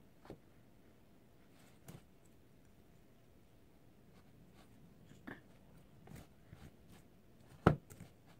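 A plastic comb and fingers working through a doll's synthetic hair: faint rustling with a few soft clicks, and one sharper knock near the end.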